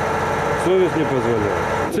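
Steady mechanical hum with a few held tones, with a man's voice speaking briefly over it in the middle.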